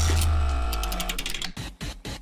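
Short musical transition sting: a deep bass hit that fades over about a second under a ringing chord and a rapid run of ticks, dying away about one and a half seconds in.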